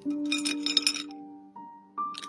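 Pocky biscuit sticks clattering onto a ceramic plate, a quick run of clinks in the first second, over background music with sustained, piano-like notes.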